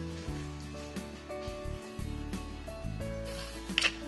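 Soft background music with held instrumental notes. Near the end there is a single short, sharp clack, as a steel ruler is set down on a sailcloth-covered table.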